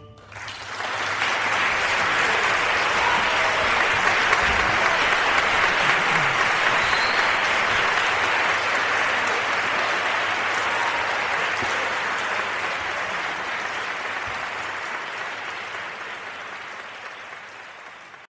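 Concert audience applauding at the end of a piece. The clapping swells within the first second, holds steady, then gradually thins out and is cut off abruptly at the end.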